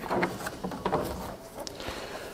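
A plastic cover panel being pulled up off its push-pin clips, giving a few short plastic clicks and light rattles.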